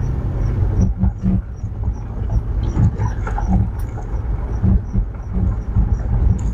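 Jeep Commander driving uphill on a gravel forest road, heard from inside the cabin: a steady low rumble of engine and tyres, broken by frequent irregular knocks and rattles from the rough surface.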